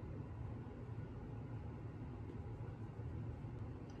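Quiet room tone: a faint, steady low hum with light background hiss, no distinct sounds.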